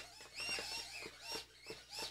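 Tiny whoop's brushless motors blipping in short bursts, a string of brief squeaky whines that each rise and fall, about three a second, as the stuck drone is worked free.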